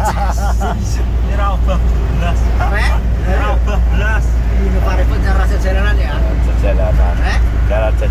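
Steady low rumble of a car driving at highway speed, heard inside the cabin, with men's voices chatting over it.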